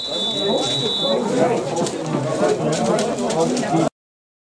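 Referee's whistle blown in one high, steady blast of about a second, signalling half-time, over the voices of players and spectators. The sound cuts off abruptly just before the end.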